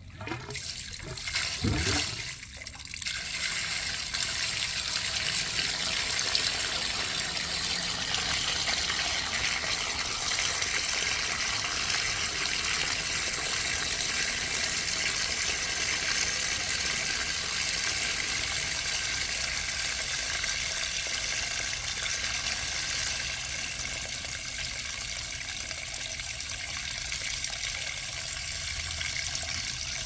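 Dirty waste water from a cleaning machine's drain hose pouring into a ground-level cleanout pipe. It is loudest for a moment about two seconds in as the flow starts, then settles into a steady pour splashing down the pipe.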